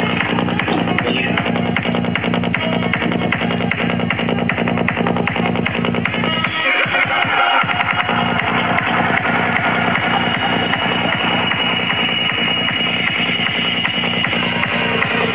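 Psytrance dance music with a fast, driving kick-and-bass beat. About halfway through, the bass drops out for about a second under a rising sweep, and then the beat comes back in.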